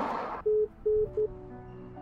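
FaceTime call-ended tone on a Mac: three short beeps at one pitch, the last one shortest, as the video call hangs up. A brief rush of noise from the call's audio cuts off just before the beeps.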